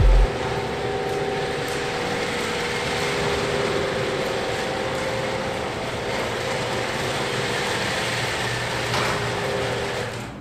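Electric garage door opener running as a sectional garage door rolls up, a steady motor hum that drops off near the end as the door reaches fully open.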